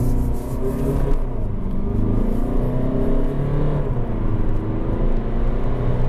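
Fiat Egea's 1.6 MultiJet turbodiesel heard from inside the cabin under hard acceleration, its pitch climbing, dropping about four seconds in as the dual-clutch automatic shifts up, then climbing again.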